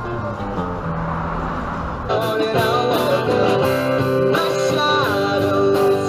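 Live band playing surf music: strummed guitars with a singer. The sound is muffled at first, then turns abruptly louder and clearer about two seconds in.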